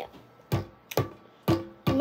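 Background music with a steady beat, about two hits a second.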